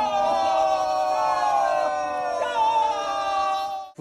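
Several men's voices holding one long, high shouted note together, its pitch sliding slowly down, cut off abruptly just before the end.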